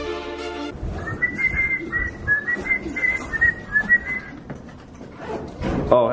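Music cuts off under a second in, followed by someone whistling a quick run of short notes for about three seconds, with handling and footstep noise underneath.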